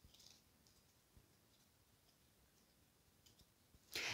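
Near silence: room tone with a few faint clicks near the start and again late on.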